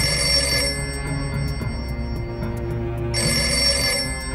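Telephone bell ringing in two bursts of about a second each, roughly three seconds apart, over background music.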